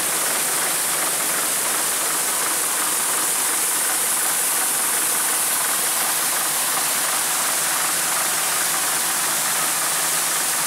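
Steady, loud rushing machine noise with a faint low hum underneath, unchanging throughout.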